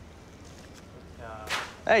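Quiet room tone with a steady low hum, then a man's excited voice near the end, rising into a loud 'Hey'.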